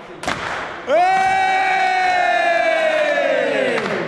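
A huddle of footballers yelling together: a sharp knock and a short burst of shouting, then one long shared shout held for about three seconds, its pitch sagging as it ends.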